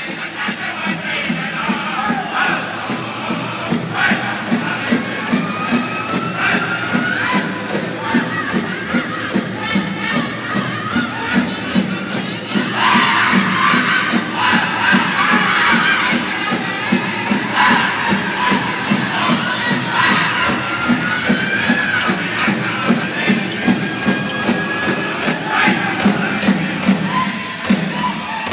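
Powwow drum group singing a Grand Entry song: a steady, even drumbeat under high-pitched voices in long sliding phrases, the singing growing louder about halfway through.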